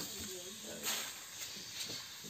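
A steady hiss with faint voices in the background; the hiss swells briefly about a second in and again near the end.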